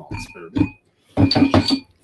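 Beer glasses clinking lightly as they are handled on a table, a faint high ring under men's talk.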